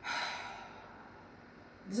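A woman's audible sigh: one breath out that starts suddenly and fades away over about a second.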